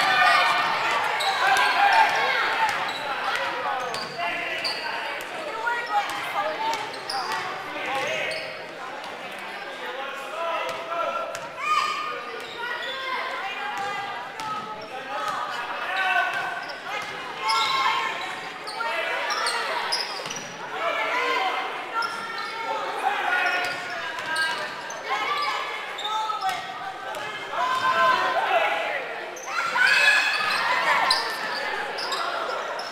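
Basketball game sound in a gymnasium: the ball bouncing on the hardwood court amid players' and spectators' voices, echoing in the large hall.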